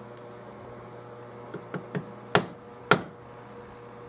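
Three light taps, then two sharp knocks about half a second apart, as a steel forend part is tapped down into its inlet in a walnut gunstock forend. A faint steady hum runs underneath.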